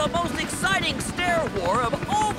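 Cartoon voices yelling one short shout after another, each swooping up and down in pitch, over the busy din of a brawling crowd.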